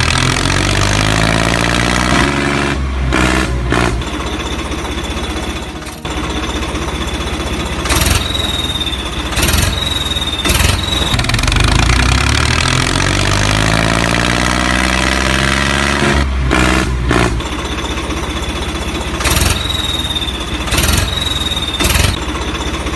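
Tractor engine running and revving, rising and falling in pitch, with a few short sharp clatters. The same sequence comes round again after about twelve seconds, like a looped engine sound.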